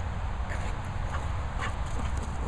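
A dog making a few short vocal sounds, one near the end falling in pitch, over a steady low rumble of wind on the microphone.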